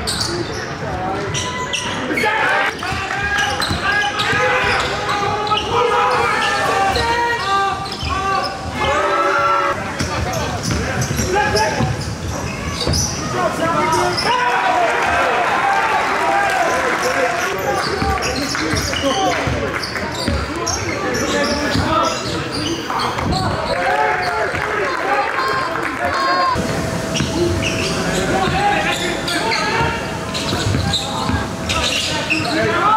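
Live gym sound of a basketball game: a basketball dribbling on a hardwood court, with indistinct voices of players and spectators echoing around the hall.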